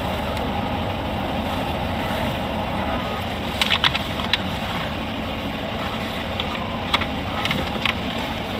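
Steady cabin noise of a parked patrol car idling, with a few short clicks about three and a half, four and seven seconds in.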